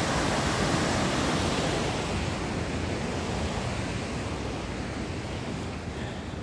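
Rushing water of a rocky stream's small cascades, a steady noise that eases gradually over the second half.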